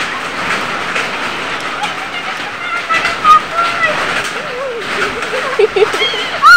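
Steady rain hiss on the ground, with faint voices now and then.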